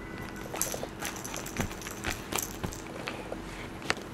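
Plastic baby rattle and teething keys clicking and clattering irregularly as a baby grabs and shakes them, a few sharp clicks a second, the sharpest one near the end.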